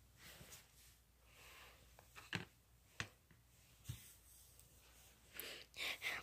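Near silence: room tone with three faint, brief taps about a second apart in the middle.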